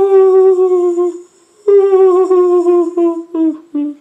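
A ghostly wailing 'oooh' tone: two long held notes, each wavering and sagging slightly in pitch, then three short ones near the end.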